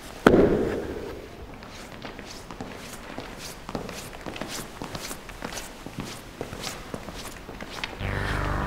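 A book dropped onto a table with one loud thud about a quarter second in. It is followed by irregular light footsteps on a hard floor.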